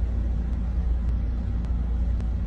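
A steady low rumble with faint ticks about twice a second.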